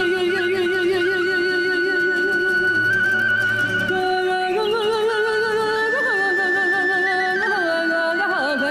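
Romanian folk song playing: long held notes with a wide waver and ornamented slides between them, over steady instrumental accompaniment.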